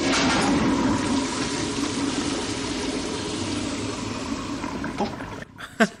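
A toilet with a high wall-mounted cistern flushing: a steady rush of water that slowly fades away. Laughter breaks in near the end.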